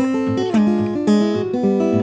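Solo acoustic guitar, a 1920s Martin 00-28, playing an instrumental tune: quick picked melody notes over changing bass notes.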